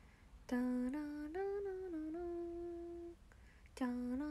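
A young woman humming a short tune with her mouth closed: a few held notes stepping up and down, then starting the same phrase over again near the end.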